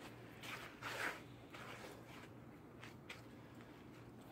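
Quiet room with a low steady hum, faint rustling and shuffling movement in the first second or so, and two light clicks near the end.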